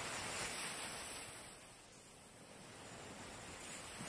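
Soft, gentle surf washing on a sandy beach: an even hiss of water that fades away about halfway through and swells back up toward the end.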